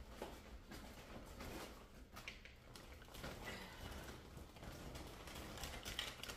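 Faint rustling and scattered small clicks as packaged groceries are handled and pulled out of a shopping bag.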